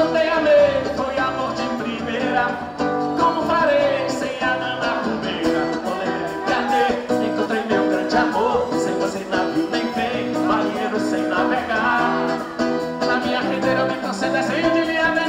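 A live band playing an axé song: electric guitar, bass and percussion keep a steady beat, with a melody line that bends in pitch over them.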